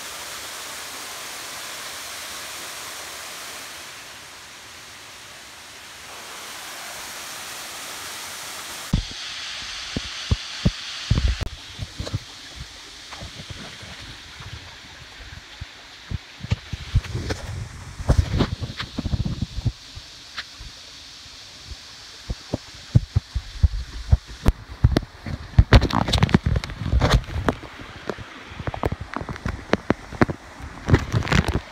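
Steady rush of falling water for about nine seconds. Then, over a fainter rush, come irregular thumps and knocks, footsteps on a rocky trail, which grow louder and more frequent in the second half.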